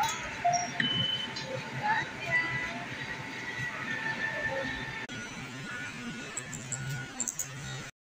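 Indistinct voices and faint music in the background of a busy store, with no clear words.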